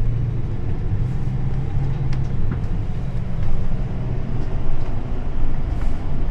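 Steady engine drone and road noise inside a moving tour vehicle, with a few light ticks.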